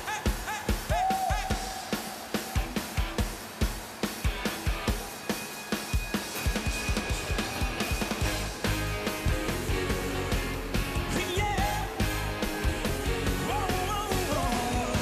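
Live pop band playing an up-tempo intro: a steady beat of drums and hand claps, about three strokes a second, with occasional short vocal calls. About two-thirds of the way through, the bass and full band come in.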